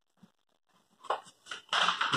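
A sheet of paper rustling as it is handled and folded: near silence at first, then a few short crackles in the second half.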